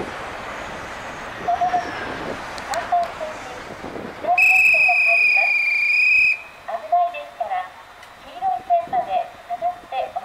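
Railway conductor's departure whistle blown once, a single steady shrill tone held for about two seconds, starting about four seconds in.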